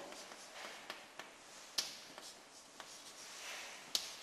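Chalk writing faintly on a chalkboard: light scratching strokes with a few sharp taps of the chalk, the loudest about two seconds in.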